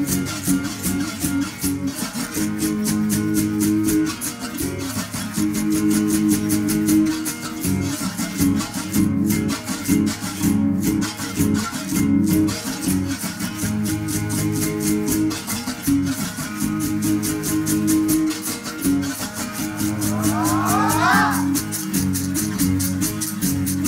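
A berimbau sextet playing an interlocking rhythm. Sticks strike the steel wires of the gourd-resonated musical bows, and caxixi basket rattles are shaken in the same hands. A sliding tone rises near the end.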